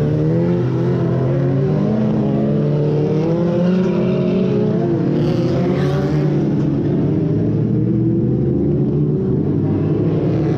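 A pack of winged oval-racing stock cars powering through a bend. Their engines overlap in a dense, loud mix that revs up and down as the cars pass, with a brief rush of hiss about halfway through.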